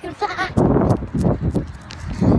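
A child's voice making a short, wavering, bleat-like sound at the start, followed by a run of rough, noisy bursts.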